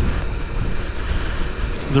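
Wind buffeting the microphone of a moving Honda C90 Cub, a loud uneven low rumble, with the bike's engine and road noise beneath it.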